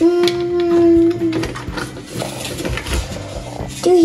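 A child's voice holding one long, steady howling note for about a second and a half, a play sound effect for a toy creature.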